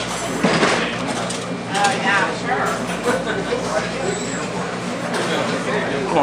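Background chatter of several voices in a busy diner, with a steady low hum underneath.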